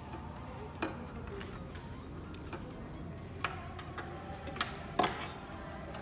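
A few sharp separate clicks and clacks of an ejection seat's harness straps and metal buckles being handled, the loudest about five seconds in, over a steady hum of hall noise.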